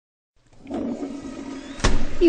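Dead silence, then background sound fading in about a third of a second in: a steady low hum over a faint haze, with a single sharp click just before the end.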